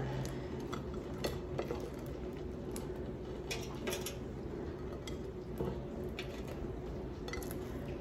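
Light scattered clicks and taps as chaffles are set into the non-stick basket of a Cosori air fryer and the basket is handled, over a faint steady hum.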